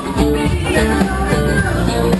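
A rock band playing live, with electric guitar and drums.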